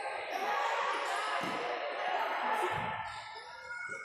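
A futsal ball thuds a few times as it is played on the indoor court, over the chatter and shouts of spectators and players. The sound echoes in a large hall.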